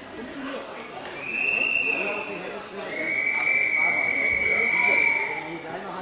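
A wrestling referee's whistle blown twice: a short blast about a second in, then a long blast of nearly three seconds, slightly lower in pitch, over background voices.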